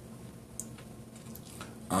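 Quiet room tone in a small room, with a couple of faint short ticks; a man's voice starts right at the end.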